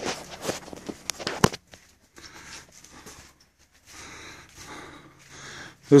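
Footsteps and handheld phone handling noise as the person filming walks along the boat. There are a few sharp clicks in the first second and a half, then soft scuffing.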